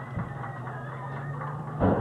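Steady low hum under faint, distant voices at an outdoor ballfield, with one sharp knock near the end.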